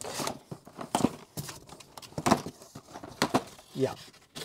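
Cardboard model-kit boxes being handled and shifted against each other in a shipping case while they are counted: a run of irregular scuffs, taps and rustles. A short spoken "yeah" comes near the end.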